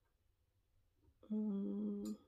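Near silence, then about a second in a woman hums one steady 'mmm' lasting about a second, the pause-filling hum of someone thinking aloud.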